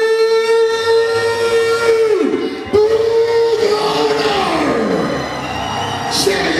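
A man's voice over a public-address system in a large hall: the ring announcer's long drawn-out call, held on one note for about two seconds, then a second call that falls in pitch and fades.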